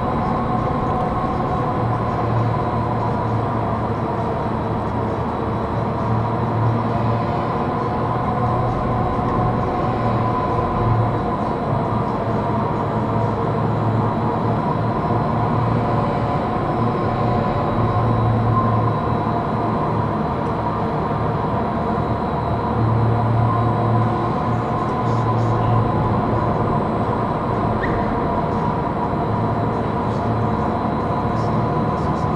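Leitner 3S gondola station machinery running as the cabin is carried slowly through the station on its tyre conveyor: a steady mechanical whir and hum with several held tones, and a low drone that comes and goes.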